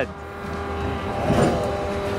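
An engine idling steadily, a constant low rumble with a steady hum over it.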